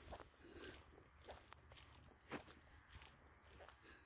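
Near silence: faint background with a few soft, irregular taps, the clearest a little past two seconds in.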